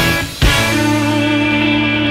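Alt-country rock band playing live, with electric guitars, bass and drums: a drum hit about half a second in, then a full chord struck and left ringing, typical of the song's closing chord.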